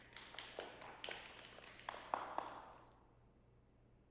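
Faint, sparse applause from a few people: irregular claps with a slight echo, dying away about three seconds in.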